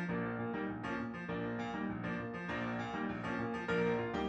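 Piano-voiced electronic keyboard playing a tune, a quick run of struck notes.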